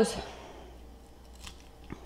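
A fork digging into a taco salad in a baked wonton shell, giving a few faint crackles and clicks, the last two about one and a half and two seconds in.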